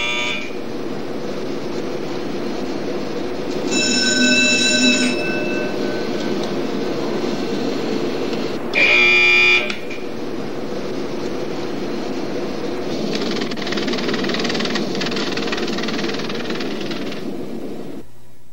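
Steady whirring equipment noise in a Minuteman missile launch control capsule, with two electronic alarm buzzes over it. The first buzz comes about four seconds in and lasts just over a second; the second, about nine seconds in, is louder and briefer.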